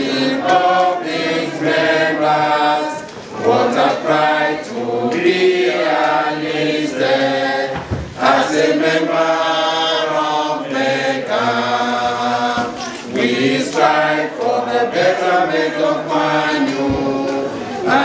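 A group of voices singing together in long held notes, with short breaks about three and eight seconds in.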